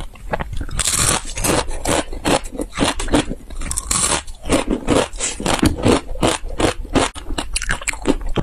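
Close-miked crunching as a block of crispy, noodle-shaped snack is bitten and chewed, a dense run of brittle cracks with louder bites about a second in and around four seconds in.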